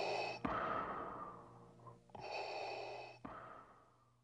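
Darth Vader's respirator breathing: two slow mechanical breaths, each a hissing pull that ends in a sharp click, followed by a longer fading exhale.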